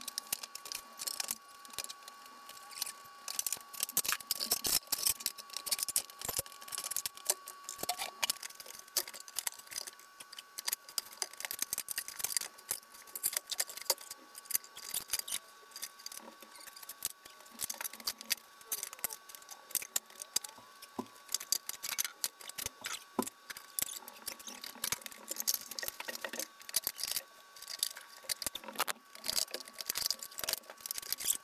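Irregular clicks, knocks and gritty scrapes as a large stone step slab is shifted by hand on a board over steel pipe rollers on a tile floor, with a faint steady high hum underneath.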